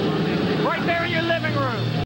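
Indistinct voices talking and calling out, over a steady low hum.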